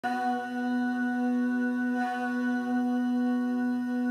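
Layered a cappella voices humming one steady, held chord, with no instruments.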